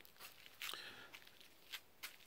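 Near silence: faint background with a soft rustle about halfway through and a brief click near the end.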